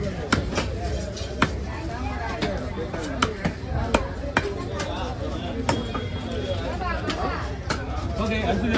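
A large heavy knife chopping through fish on a wooden log chopping block, with sharp irregular chops roughly once a second. Voices chatter in the background.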